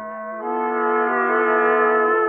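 Brass music cue from a radio drama's orchestra: sustained brass chords, swelling louder about half a second in.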